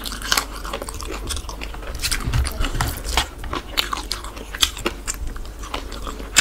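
A man chewing and biting into masala chicken close to the microphone, with irregular sharp wet smacks and crunches throughout.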